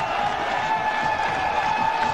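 Stadium crowd cheering a boundary at a cricket match: a steady noisy wash of voices with one steady high note held over it, which stops near the end.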